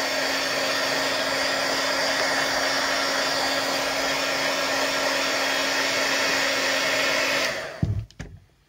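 Handheld hair dryer blowing steadily, with a constant motor hum, as it heats a craft-foam strip wound on a stick to set it into a spiral. It switches off about seven and a half seconds in, followed by a short knock.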